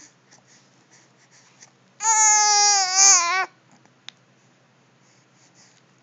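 A 3-month-old baby's single loud, high-pitched coo, about a second and a half long, starting about two seconds in; its pitch holds steady, then wavers and falls at the end.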